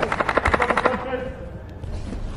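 A fast, even rattle of sharp clicks, about twenty a second, lasting about a second before it stops.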